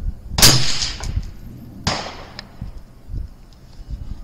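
A single 6mm ARC rifle shot about half a second in, ringing out afterwards. A second, weaker sharp report follows about a second and a half later.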